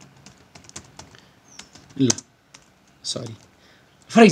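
Typing on a computer keyboard: a run of quick, light key clicks, with two brief bits of a man's voice about halfway through and again near the end.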